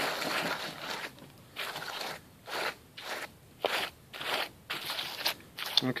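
A hand wiping damp potting mix across a filled 50-cell plastic seed tray to level it off: a series of short, crunchy scraping strokes, about two a second.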